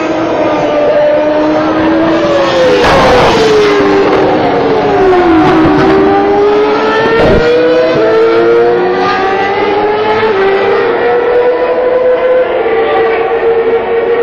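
Several Formula One cars' 2.4-litre V8 engines running on the circuit, their notes overlapping and rising and falling in pitch, over noise from the grandstand crowd. Short sharp bursts of noise come about three seconds in and again about seven seconds in.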